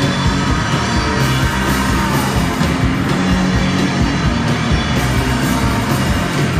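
Live noise-gaze rock band playing loud and continuous: distorted electric guitars, bass and drums.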